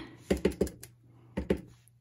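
Clear acrylic stamp block tapping on an ink pad and pressing down on cardstock on a table: a quick run of four light taps, then two more about a second later.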